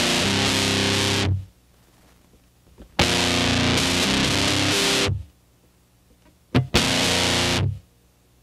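Electric guitar through heavy fuzz distortion, playing two-note chords on the open and second-fret F and A-sharp strings. There are three chord bursts, each one to two seconds long and cut off abruptly, with near silence between them.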